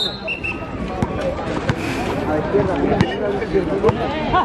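Overlapping voices of players and onlookers chattering around the court, with no single clear speaker, and a few sharp knocks at about one, three and four seconds in.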